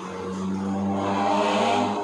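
A motor vehicle's engine droning, growing louder over about a second and a half and then dropping away sharply near the end.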